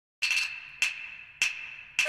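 Beijing opera percussion: a quick flurry of sharp, high-pitched wooden-sounding strokes, then three single strokes evenly spaced about 0.6 s apart, each ringing briefly.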